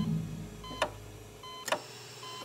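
Two electronic heart-monitor-style beeps, about 0.9 s apart, each a short tone ending in a sharp tick, while the low end of a music sting fades out in the first half second.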